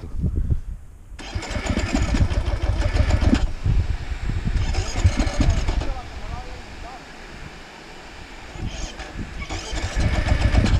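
Dirt bike engine in rough, uneven bursts, a long one about a second in, another around the middle and a short one near the end, as the rider tries to get the stalled bike going. The quieter stretch between bursts falls near the end.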